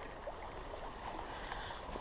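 Faint, steady rush of a flowing river.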